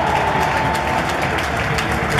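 Large stadium crowd applauding, a dense patter of many hands clapping, with a steady held tone that cuts off about a second in.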